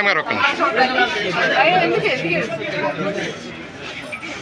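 Several people talking at once, their voices overlapping in a close crowd.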